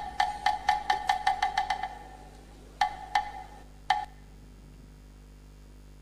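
Wooden percussion block struck in a quickening run of about ten sharp knocks over the first two seconds. Three more spaced knocks follow between three and four seconds in.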